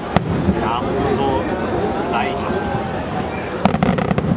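Firework cylinder shells bursting in the sky: one sharp bang just after the start and a quick cluster of cracking reports near the end, with spectators' voices in between.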